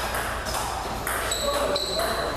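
Table tennis rally: the celluloid ball clicking off the paddles and the table, with short high squeaks from sneakers on the hall floor and people talking in the background.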